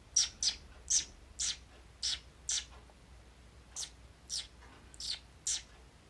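A person chirping with pursed lips in imitation of a pet bird's call: about ten short squeaky chirps, each falling in pitch, in two quick runs with a short pause near the middle.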